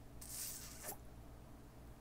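Faint room tone in a pause, with a short soft hiss near the start and a small click about a second in.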